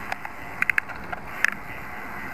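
Wind and road noise from riding a road bike, with a few sharp clicks: one near the start, a quick run of three a little after, and a loud single one near the middle.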